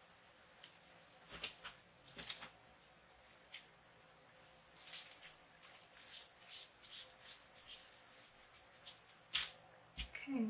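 Faint handling sounds: a scattered run of light clicks and rustles, thickest about halfway through, with one sharper click near the end.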